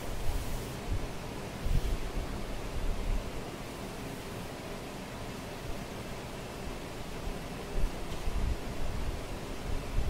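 Steady hiss of classroom room noise, with a few dull low thumps near the start and again about eight seconds in.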